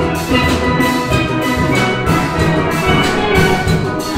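Steel band playing: an ensemble of steelpans in a quick, even rhythm of struck notes, with a drum kit keeping time beneath.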